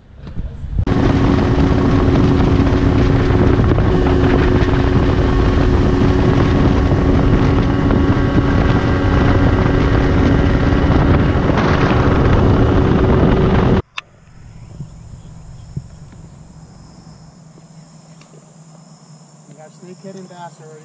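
Boat's outboard motor running at speed, with heavy wind on the microphone and a steady engine tone. It cuts off abruptly about 14 seconds in. A much quieter stretch follows, with a steady high-pitched insect drone and a low hum.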